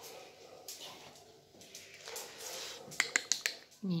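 Soft rustling of hands stroking and handling a dog, then a quick run of sharp clicks about three seconds in. A voice begins right at the end.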